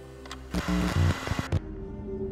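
Old film projector clatter and crackle sound effect, cutting off suddenly about a second and a half in, over a steady background music drone.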